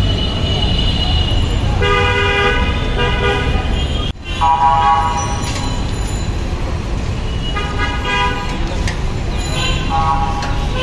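Road-traffic horns honking over a steady traffic rumble. There are a pair of short honks about two seconds in, a louder honk at a different pitch just after the middle, and more honks near the end.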